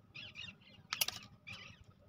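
Large metal scissors cutting a bicycle-tube valve: one sharp snip about a second in, with faint scraping of the blades against the metal around it.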